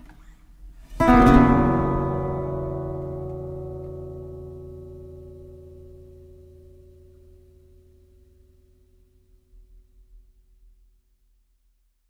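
Nylon-string Godin Multiac guitar: a last held note fades, then a full chord is strummed about a second in and left to ring. The chord dies away slowly over some nine seconds, ending the piece, and the sound then cuts to silence.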